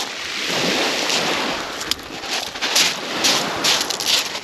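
Small waves washing in and out on a shingle beach: a steady rushing surf that swells and eases, with a scattering of short, sharp pebble clicks.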